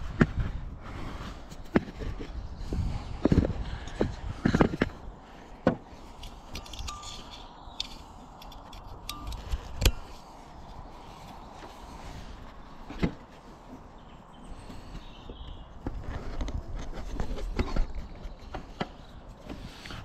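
Hands working small wire crimp connectors and wiring on a tractor work light: rustling and handling noise with scattered sharp clicks and knocks, the sharpest about ten seconds in, as the connectors are pushed together.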